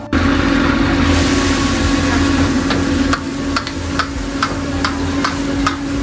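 Commercial gas wok burner with its forced-air blower running with a loud, steady roar and hum. From about halfway through, a run of sharp knocks comes about twice a second.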